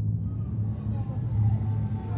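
A low, steady rumble: the opening sound bed of a video soundtrack, just before its music and narration begin.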